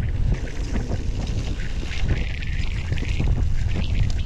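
Wind buffeting an action camera's microphone as a mountain bike rolls fast down a rough dirt track, with tyre noise on gravel and many short rattling knocks as the bike goes over stones.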